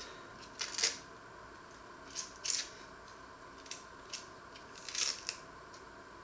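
Dry onion skin crackling as it is peeled and cut away with a small knife: several short, crisp rustles at irregular intervals.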